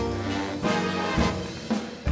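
A jazz big band playing live: trumpets, trombones and saxophones sounding together in full ensemble chords, easing off briefly near the end.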